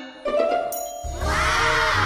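Magic-spell sound effect: a chime rings out about a quarter second in and holds, then a loud shimmering sweep swells in with its pitch arching upward over a low rumble.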